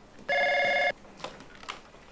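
Corded desk telephone ringing electronically: one short ring burst about a third of a second in, followed by a few faint clicks.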